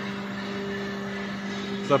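Steady machine hum with two held low tones over a faint even hiss; a voice starts at the very end.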